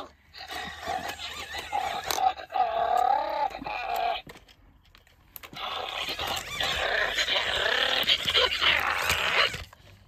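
WowWee Dog-E robot dog playing out its bone-toy game: electronic dog noises from its speaker, in two stretches with a short pause about four seconds in.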